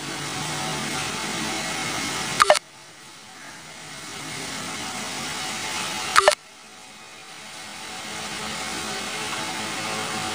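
Two short click sound effects, about four seconds apart, timed to the cursor-hand taps on an animated subscribe button and then on a bell icon. They sound over a steady hiss that drops away after each click and slowly comes back.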